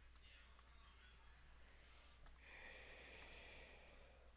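Near silence with a few faint clicks from a computer keyboard and mouse.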